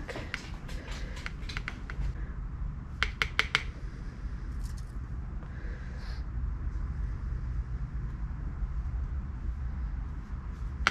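Small plastic spoon tapping and scraping as dye powder is measured onto a digital scale: light ticks, then a quick run of four sharp clicks about three seconds in. Under them runs a low rumble of wind on the microphone.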